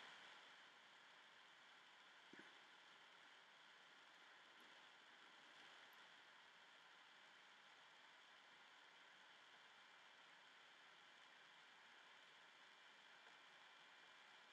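Near silence: faint steady room tone, with one faint click about two seconds in.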